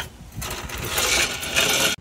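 Rough scraping and rubbing handling noise as a plastic cooler is settled on a folding hand truck and a bungee cord is drawn across it. It starts about half a second in, grows louder, and cuts off suddenly at the end.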